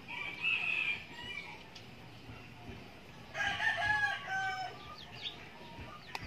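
A rooster crowing twice: a shorter call right at the start and a longer, louder one a little past the middle.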